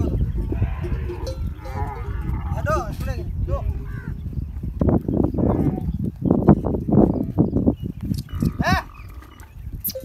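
Outdoor sounds in a camel herd: voices and animal calls over a steady low rumble, with short runs of quick chirping calls about three seconds in and again near the end.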